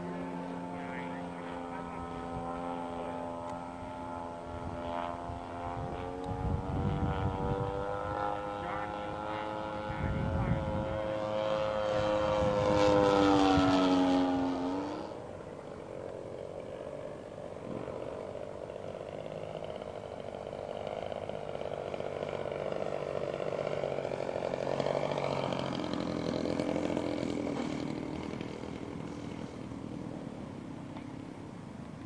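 Edge 540 radio-controlled aerobatic model airplane in flight, its engine and propeller drone climbing in pitch and loudness to a peak a little before halfway. The pitch then drops sharply and the drone continues quieter and lower, swelling again near the end.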